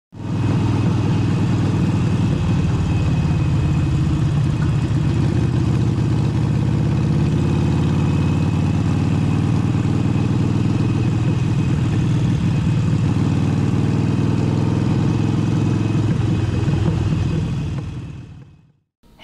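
Motorcycle engine running at a steady cruising speed, its low drone holding an even pitch without revving, then fading out near the end.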